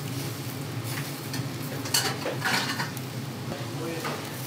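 Meat kebab skewers sizzling over a charcoal grill, with a steady low hum underneath and a couple of sharp clicks about two seconds in.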